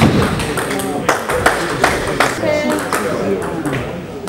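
Irregular sharp clicks of table tennis balls striking tables and bats around a hall, mixed with people talking.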